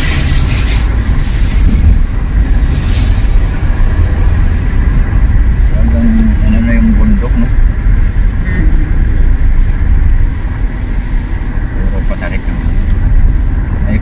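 Steady low rumble of a car driving on a concrete road, heard from inside the cabin: engine, tyre and road noise.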